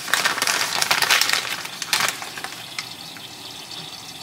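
A plastic noodle packet crinkling and crackling as it is torn open, dense for about the first two seconds, over a pan of boiling miso sauce. The crackle then fades to a quieter bubbling hiss with a few scattered clicks.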